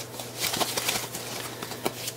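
White foam packing wrap being lifted out of a cardboard box and unfolded by hand: a soft, crackly rustling with many small clicks.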